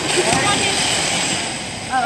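Small plastic scooter-board wheels rolling on a wooden gym floor, a steady rolling noise under chatter from several people.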